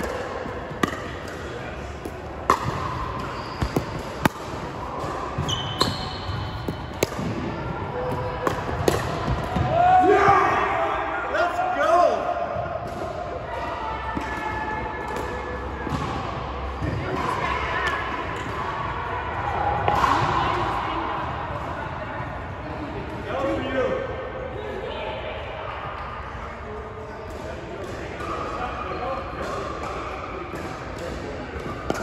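Pickleball paddles striking a hard plastic ball: a run of sharp pops through the first dozen seconds, then scattered pops, ringing in a large gym hall.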